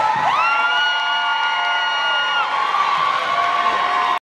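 Audience cheering and children shouting as the music stops, with one high, long whoop that rises and then holds for about two seconds.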